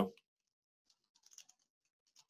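A few faint computer keyboard keystrokes about a second and a half in, typing a folder name.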